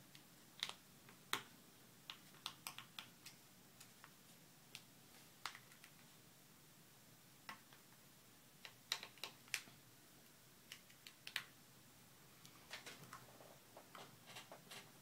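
Scattered light clicks and taps from small iPod Touch parts (glass digitizer frame, metal housing) being handled by fingertips on a table, over near silence. They come singly and in little clusters, most densely around a second in, between two and three seconds, and near nine and eleven seconds.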